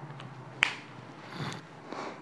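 A single sharp click about half a second in, a whiteboard marker's cap being snapped shut, then a faint rustle of movement about a second later.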